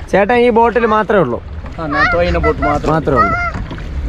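A voice speaking in two stretches, in the first second and a half and again from about two seconds in, over a steady low rumble.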